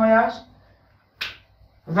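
A single short, sharp click about a second in, from a whiteboard marker being capped, between stretches of a man's lecturing voice.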